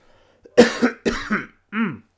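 A man coughing, a quick run of three or four coughs starting about half a second in, from the chest congestion he is still getting over.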